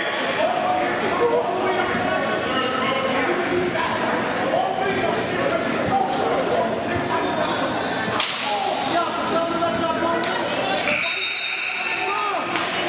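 Indistinct voices of players and spectators echoing in a gymnasium, with a few sharp smacks on top, the loudest about eight seconds in. A brief high steady tone sounds near the end.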